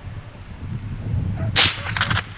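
A single sharp crack about one and a half seconds in, fading within half a second: a shot from a small-calibre TOZ rifle firing light rimfire cartridges.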